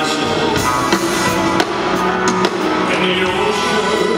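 Live band with a string section playing, the singer's voice among the sustained tones, with a few drum hits.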